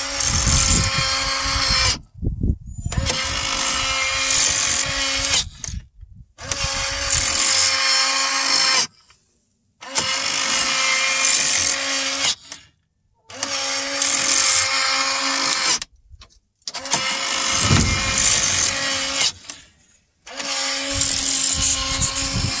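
Electric motor of an Omlet automatic chicken coop door running in about seven attempts of a couple of seconds each, stopping briefly between them, while the door stays shut. The door has frozen up with ice, and the controller ends by reporting the door blocked.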